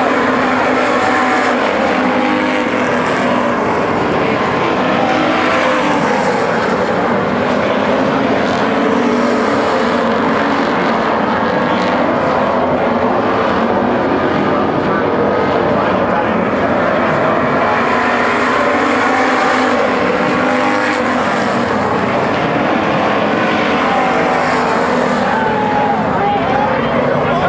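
A pack of V8 street stock race cars running at racing speed on a dirt oval, the engine sound swelling and fading as the cars pass.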